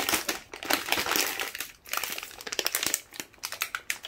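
Clear plastic bags and packaging of craft kits crinkling as they are handled and picked up, in quick irregular rustles with a couple of brief pauses.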